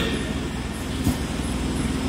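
A pause in a man's speech over a microphone, leaving a steady low background rumble and hiss, with a faint click about a second in.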